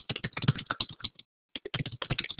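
Typing on a computer keyboard: a quick run of key clicks, about ten a second, with a brief pause a little past the middle.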